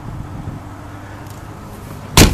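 Steady low background rumble with a faint constant hum.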